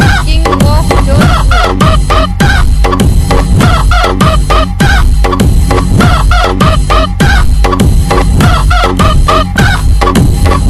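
Loud DJ remix dance track built on sampled rooster clucks and crows, repeated in short calls over a heavy, steady bass beat.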